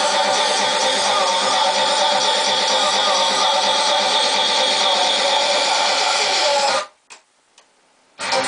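DJ mix music played from Pioneer CDJ decks: a dense, steady track that cuts off suddenly near the end, leaving near silence with a couple of faint clicks.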